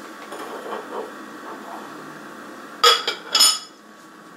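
Two sharp glass clinks about half a second apart, near the end, as a glass jar is handled, with a brief ringing after each. A few soft knocks come earlier, over a steady room hum.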